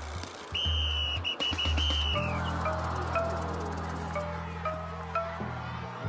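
Cartoon underscore music: a high steady tone broken into short pieces for the first two seconds, then sparse plinking mallet-percussion notes over sustained low notes.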